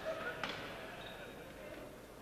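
A single knock of a football bouncing on a wooden sports-hall floor about half a second in, with players' voices in the background.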